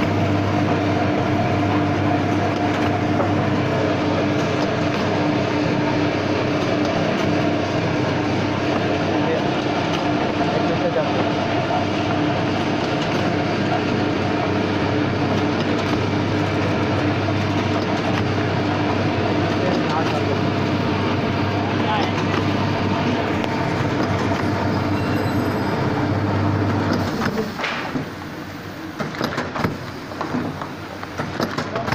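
Automatic soap-bar wrapping and packing machine running, a steady mechanical hum with a strong low drone. The hum drops away about three seconds before the end.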